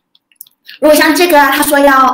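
Speech: a person talking, starting about a second in after a short near-silent pause that holds a couple of faint clicks.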